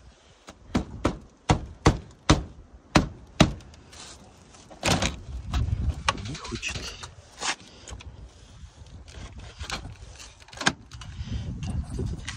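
Sharp plastic knocks and clicks as a Volkswagen Passat's bumper grille is pressed and tapped into place: about eight in quick succession over the first few seconds, then handling noise and another knock later on. The grille's clips are reluctant to snap in.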